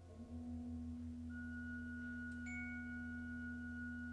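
Organ and percussion music: a low organ note is held steadily while high, bell-like tones of tuned percussion enter one at a time. The first comes in about a second in, and a second is struck about halfway through and rings on.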